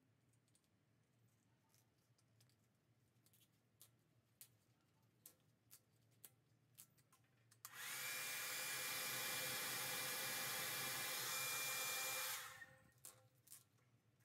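Hand-held hair dryer switched on for about four and a half seconds, a steady blowing rush with a thin high whine, then dying away as it is switched off; it is heating plastic tubing so the tube will stretch over a one-way valve. A few light clicks and taps come before and after it.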